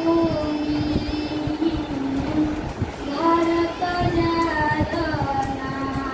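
A girl singing solo without accompaniment, holding long drawn-out notes that glide gently between pitches, with a short breath break just before three seconds in.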